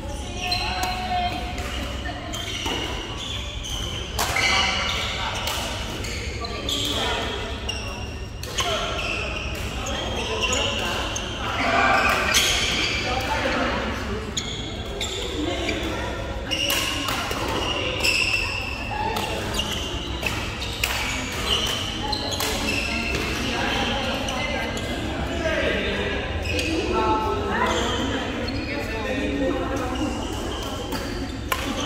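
Badminton play in a large sports hall: repeated sharp racket strikes on a shuttlecock, with voices of players and onlookers echoing around the hall.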